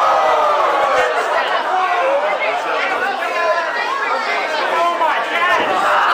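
Crowd of spectators talking and calling out over one another, many voices overlapping, with one long falling shout at the start.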